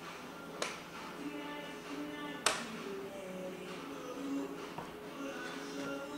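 Soft background music of sustained notes, with two sharp wooden knocks, one about half a second in and one about two and a half seconds in. The knocks come as the flying mullion of a softwood casement window is released and lifted out of its frame.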